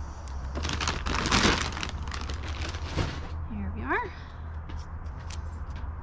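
Crinkling and rustling of a seed packet being handled for about two and a half seconds, followed by a short vocal sound about four seconds in.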